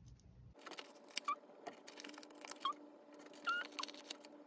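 Faint handling of a paper sheet of letter stickers: light rustling and clicks, with a few short squeaks as the stickers are worked off the backing.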